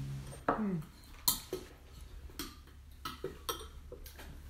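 Crockery and cutlery clinking at a table: about half a dozen sharp clinks and knocks, spread unevenly over a few seconds.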